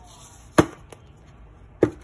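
Plastic bottles and containers being set down on a hard countertop: two sharp knocks, about half a second in and near the end, with a faint tap between.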